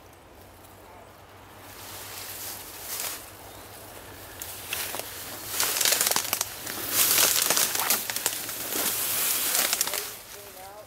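Tall grass and brush swishing and twigs crackling as someone pushes through the undergrowth on foot. It builds from about two seconds in and is heaviest in the second half.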